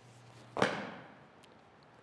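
One sudden sound about half a second in, fading away over most of a second, as a fencer hops and swings a fokos (war axe) down from overhead: his landing and the swing of the axe.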